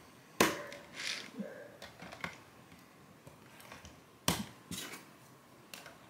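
18650 lithium cells and plastic parts being pressed into the DevTerm's battery holder: sharp clicks and snaps, the loudest about half a second in and about four seconds in, with a few lighter clicks between.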